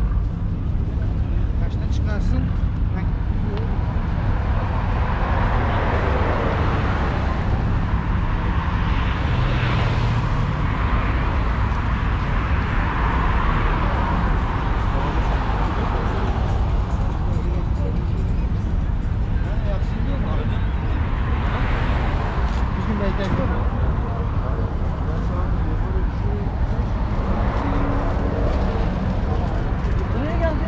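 Busy street ambience dominated by road traffic: a steady low rumble with vehicles swelling past every few seconds, and voices of passers-by.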